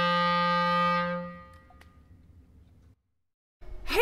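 Clarinet holding one long low note that fades out about a second and a half in. A short quiet stretch follows, and a woman starts speaking just before the end.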